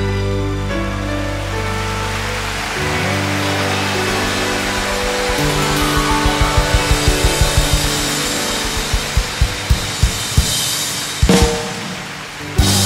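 Live rock band with drum kit, electric and acoustic guitars holding a chord, then the drums come in with rapid hits of about five a second that break into spaced single accents, with one big hit near the end.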